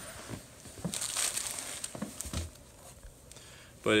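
Plastic zip-top bag crinkling as it is handled, in soft rustles that are loudest about a second in.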